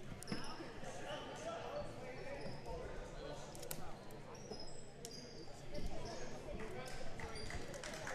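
A basketball being dribbled on a hardwood gym floor, with short high squeaks and the murmur of voices in the gym around it.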